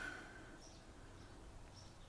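Near silence: faint outdoor background with two faint, short, high bird chirps, about a second in and near the end.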